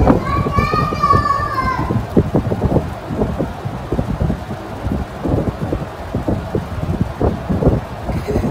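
A single high-pitched, drawn-out vocal call, like a voice, lasting about a second and a half just after the start. It sits over continuous low rumbling and crackling noise.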